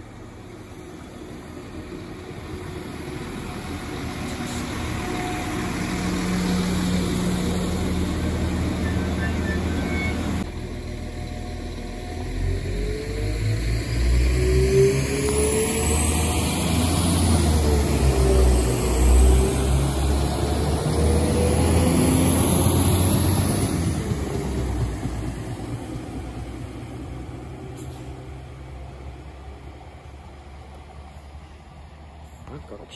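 Northern multiple-unit passenger train passing along the platform. Its running noise builds up, is loudest through the middle with a heavy rumble of wheels and bogies and some gliding tones, then fades away as it moves off down the line.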